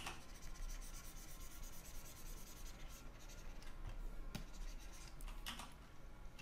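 Stylus of a graphics pen tablet dragging across the drawing surface in faint, continuous strokes as a lettering flourish is drawn, with a few light clicks in the second half.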